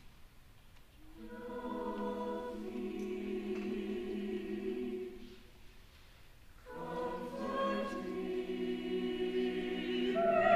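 High-school choir singing sustained chords in two phrases: after a short pause the voices enter, hold a chord that fades away about five seconds in, then come back in near seven seconds and grow louder.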